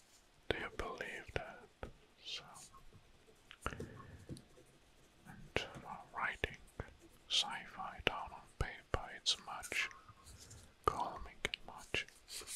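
A man whispering close to the microphone, too softly for the words to be made out, with many short, sharp clicks between the phrases.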